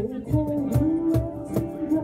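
Live acoustic band music: a sung melody over a strummed acoustic guitar, with percussion keeping a steady beat of about four strokes a second.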